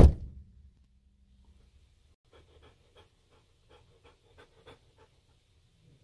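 One heavy thump at the start, then faint panting from a dog inside a car, about three soft breaths a second.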